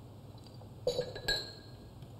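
Glass communion vessels clinking together: a few light clinks about a second in, the last one ringing briefly.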